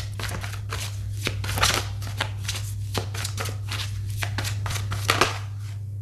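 Tarot cards being shuffled by hand: a run of irregular crisp card snaps and slides, with the loudest snaps about one and a half seconds in and again near five seconds. A steady low hum runs underneath.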